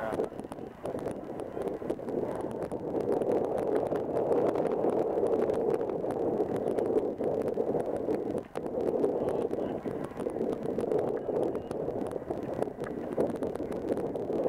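Wind rushing and buffeting over a phone microphone, a steady noise that flutters throughout, with fine crackles over it and a brief drop about eight and a half seconds in.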